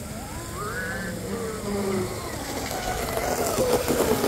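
Twin Leopard 4082 1600kv brushless motors of a DeltaForce Vortex 34 RC hydroplane whining, the pitch rising over the first second. The sound grows louder as the boat comes close, with water spray hissing near the end.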